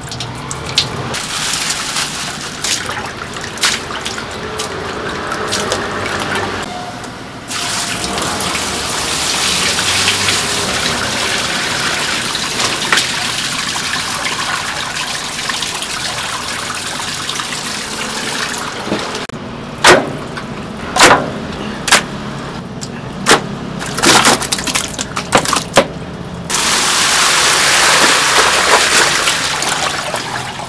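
Running water from a hose gushing over raw chicken pieces as they are rubbed clean by hand in a steel tub and a stainless pot that overflows. About two-thirds of the way through come several sharp knocks, and near the end the water gets louder as the pot is tipped out.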